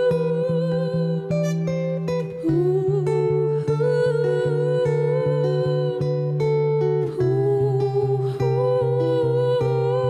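Live acoustic song: a woman sings long, wordless held notes with vibrato over an acoustic-electric guitar picked in a steady, even pattern. The guitar's bass note shifts twice.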